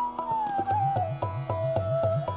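Bamboo bansuri flute playing a slow melodic line that glides down from a held note, over tabla strokes; the bass drum's pitch is pressed up and down about three times a second in the second half.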